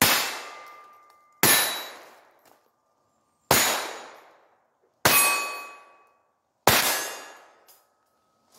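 Five .22 LR pistol shots from a Ruger SR22, one to two seconds apart. Each is followed by the ringing clang of a struck steel target plate, fading over about a second.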